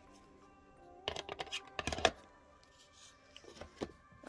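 Album packaging being handled: a flurry of clicks and rustles about a second in, lasting about a second, and a few more near the end, over faint background music.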